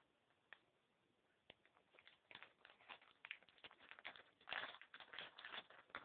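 Faint crackling and rustling of a foil blind-bag toy pack being torn open and handled: a few separate clicks at first, then a dense run of crinkles from about two seconds in.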